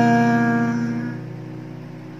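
Acoustic guitar chord from a single down strum ringing out and fading away, under the tail of a sung note that is held and dies out about a second in.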